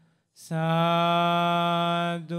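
A single man's voice chanting a Buddhist devotional chant in long, steady held notes. After a brief pause at the start, one long note is held at a single pitch.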